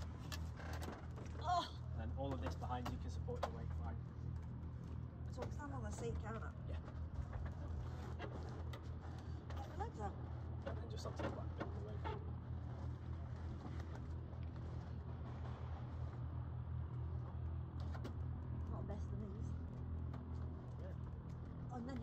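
A steady low engine hum runs throughout, with short stretches of quiet talk and a few small knocks as someone climbs out of an open biplane cockpit.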